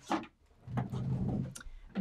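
Craft supplies being put away: a sharp click just after the start, a brief pause, then softer handling noise with another light click later.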